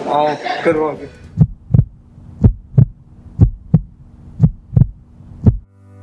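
Heartbeat sound effect: deep double thumps about once a second, four lub-dub pairs and a last single beat, over a faint steady hum. It stops suddenly.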